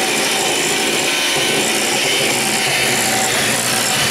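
Electric hand mixer running steadily, its twin beaters whirring through thin royal icing in a bowl.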